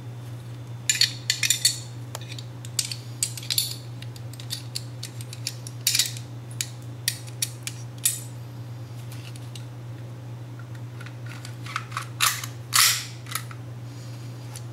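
Metal clicks and clacks of airsoft pistol parts being handled and fitted together: the WE G18C's steel outer barrel going into its steel slide and the slide going back onto the frame. The clicks come in several short groups, the loudest near the end.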